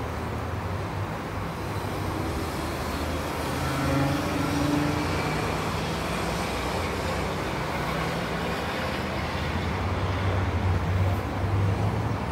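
Road traffic: motor vehicle engines running with a steady low hum, a little louder around four seconds in and again near the end.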